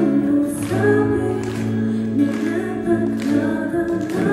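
A woman singing a song live into a handheld microphone over instrumental accompaniment, holding long notes over a steady low bass line.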